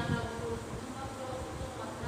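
A steady low buzzing hum.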